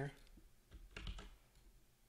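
A few faint clicks of a computer mouse or keyboard in use at the desk, with a soft low bump about a second in.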